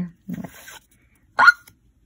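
A woman's short, high, rising exclamation of surprise, "Oh!", about one and a half seconds in. It comes just after a faint rustle of trading cards being slid through her hands.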